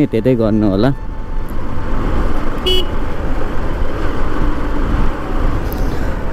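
Steady rushing noise of a 150 cc motorcycle being ridden, with wind on the microphone. One short horn toot sounds about halfway through.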